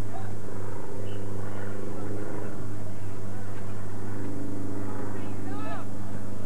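Voices calling out across a soccer field, with a couple of quick high rising-and-falling shouts about five seconds in. Under them runs a steady low hum with several overtones.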